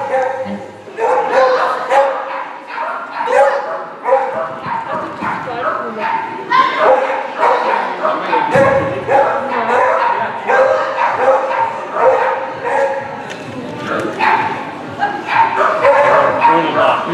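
Dog barking and yipping in quick repeated calls throughout, mixed with people's voices.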